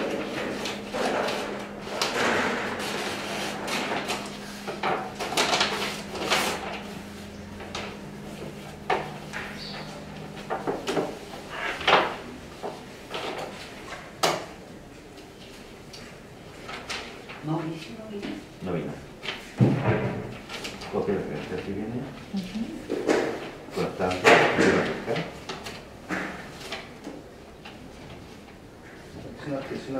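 A manila paper envelope being opened and the papers inside handled: irregular paper rustling, crinkling and tearing sounds with sharper snaps now and then, the loudest about twelve and fourteen seconds in.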